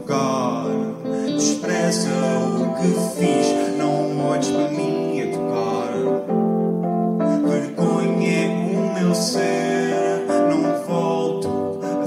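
A live band plays an instrumental passage of a pop song, with guitar and sustained keyboard chords that change every second or two.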